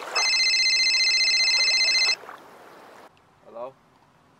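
A mobile phone ringing: a high, trilling electronic ring that lasts about two seconds and stops abruptly, as if answered.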